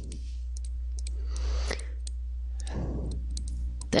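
Pen stylus tapping and clicking on a tablet surface during handwriting: scattered light clicks over a steady low hum.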